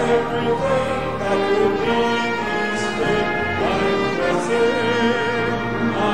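A church congregation singing a hymn with instrumental accompaniment: sustained notes, some with vibrato, running steadily throughout.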